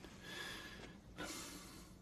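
Faint breathing: two breaths in a row, each lasting about a second.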